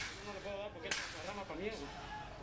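Two sharp gunshots about a second apart on an outdoor field recording, with raised voices between them.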